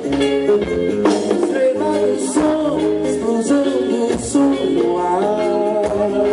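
Live band playing: guitars over a drum kit and hand percussion, heard from the audience.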